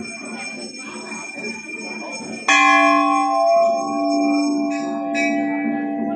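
A temple bell is struck sharply about two and a half seconds in and rings on with a long, steady, slowly fading tone. It is struck again more lightly just after five seconds. Before the first strike there is only the murmur of a crowd.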